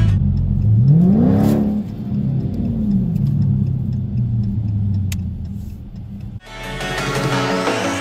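Dodge Challenger Scat Pack's 392 HEMI V8, heard from inside the cabin, revving up sharply and back down about a second in, then running steadily while driving. Music comes in near the end.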